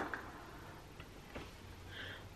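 A couple of faint clicks from a computer mouse about a second in, in a quiet room, after a short noisy burst right at the start.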